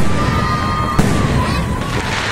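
Aerial firework shells bursting: a sharp bang at the start and a second one about a second in, each followed by a low rumbling echo.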